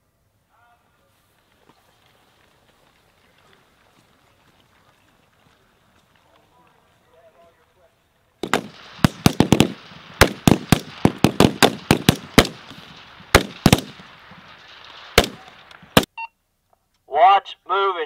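About eight seconds of near quiet, then a rapid, irregular string of about twenty rifle shots from several M16 rifles firing on the line, which stops about sixteen seconds in. A man's voice over a loudspeaker follows near the end.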